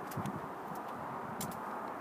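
Quiet outdoor background noise: a steady low hiss with a few faint clicks.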